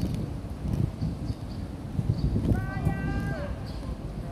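Low, uneven outdoor rumble. About two and a half seconds in, a distant person's voice calls out once, holding one pitch for just under a second before dropping at the end.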